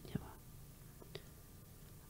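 Near silence during a pause at a studio microphone, with a faint breath at the start and a single small mouth click about a second in.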